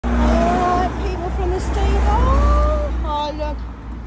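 A person's voice making long, drawn-out vocal sounds with held and gliding pitches, which fade about three and a half seconds in, over heavy low wind rumble on the microphone.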